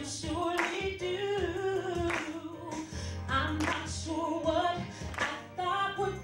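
A woman singing a gospel praise song into a microphone, holding long notes that bend in pitch, over accompaniment with a sharp beat about every second and a half.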